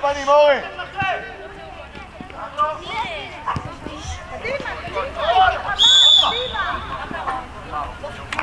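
Shouts of players and coaches across a football pitch, and about six seconds in a single short, shrill referee's whistle blast, stopping play after a player has gone down.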